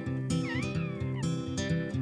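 A newborn bear cub gives one high, wavering cry, under a second long, dipping, then rising and sliding down, over strummed acoustic guitar music.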